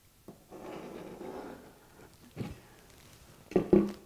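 Pencil scratching softly on plywood for about a second as it traces around the rim of a plastic pail, followed by a light knock about two and a half seconds in, which is most likely the pail being set down on the wooden bench.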